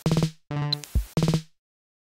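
A live-coded TidalCycles electronic beat built from samples. Pitched sample hits, some chopped into quick stutters, play over a low thump about a second in. The pattern then drops to dead silence for the last half second.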